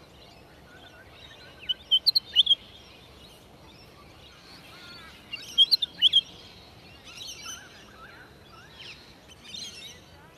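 Willie wagtail calling: two bursts of sharp, high chirps, about two seconds in and again around six seconds, with softer bird chatter in between and near the end.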